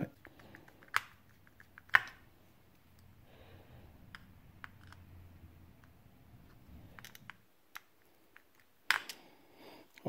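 Small metal parts of an open spincast reel and a screwdriver clicking and tapping as a screw inside the reel body is set and turned to adjust gear lash. There are a few sharp clicks, the loudest about one and two seconds in and again near the end, with light ticks and faint handling noise between them.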